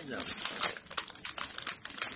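Crinkling of a Keebler Vienna Fingers cookie package's plastic wrapper as it is handled and opened: a quick run of irregular crackles.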